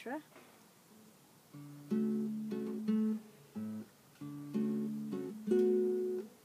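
Acoustic guitar playing the slow opening chords of a lullaby, each chord ringing out before the next, starting about a second and a half in.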